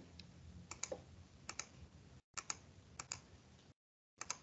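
Computer keys being typed, four faint keystrokes about a second apart, each a quick double click of press and release, entering 1/20 into a calculator program.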